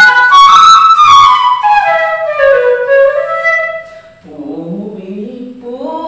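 Bamboo Carnatic flute playing a phrase of clear, held notes that steps downward in pitch. About four seconds in the flute stops, and a woman's voice follows in a lower, wavering line, singing the notes.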